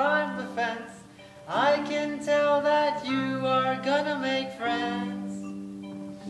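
A voice singing a song from a stage musical with held notes over instrumental accompaniment, in phrases that begin at the start, about one and a half seconds in, and near five seconds in.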